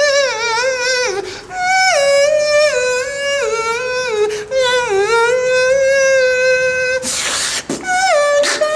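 Vocal beatboxing: a pitched, synth-like line from the mouth that holds notes and steps down in pitch, wavering quickly in places. About seven seconds in, a short hissing burst breaks the line before the pitched line starts again.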